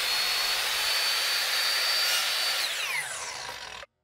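Ryobi miter saw motor running at full speed with a high, steady whine as its blade cuts a thin wooden dowel rod. About two and a half seconds in, the whine falls as the blade spins down, then the sound cuts off suddenly just before the end.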